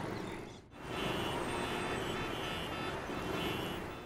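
Steady city road traffic noise, with engines and short car horn tones. It dips briefly under a second in, then carries on evenly.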